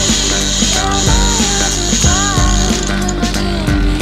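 Background music with a regular beat over the fast ratcheting of a large conventional fishing reel as line is pulled off it.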